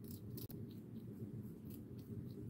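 A hedgehog chewing dry food pellets: faint, irregular crisp crunching clicks over a steady low background hum.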